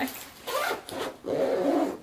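A winter jacket's zipper being pulled, followed by a short laugh near the end.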